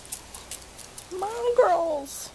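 Claws of two small dogs ticking on concrete as they play, followed about a second in by a loud, drawn-out high-pitched vocal sound that bends up and then down.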